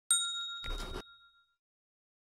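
Logo sound effect: a single bright bell-like ding that rings out and fades over about a second and a half, with a short noisy whoosh over it about half a second in.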